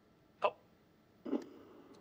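Two brief sounds from a person's mouth or throat: a short, sharp hiccup-like catch about half a second in, then a quieter breathy sound just past a second.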